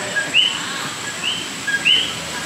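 Puerto Rican coquí frogs calling: repeated two-note "co-kee" calls, a short lower note followed by a higher rising one, overlapping from several frogs. A thin steady high tone runs underneath.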